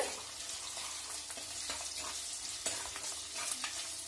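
Sliced garlic, green chillies and curry leaves sizzling steadily in hot oil in an earthenware pot, with a few light scrapes of a steel spoon stirring them.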